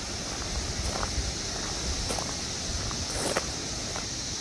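Chorus of 17-year periodical cicadas: a steady, high-pitched droning buzz that never lets up.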